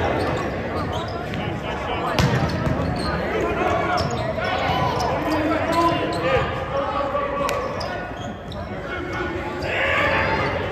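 Indoor volleyball rally: the ball is struck several times with sharp smacks that echo in a large gym, the loudest about two and six seconds in. Players call out and spectators talk throughout.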